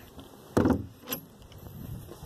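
Wooden compost bin lid dropping shut: a loud thump about half a second in, then a sharper clack half a second later.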